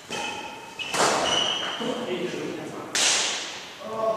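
Badminton rackets striking the shuttlecock during a doubles rally: two sharp hits about two seconds apart, each ringing on in the sports hall. High squeaks of shoes on the wooden floor come in between.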